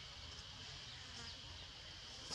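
Faint, steady, high-pitched drone of insects in the background.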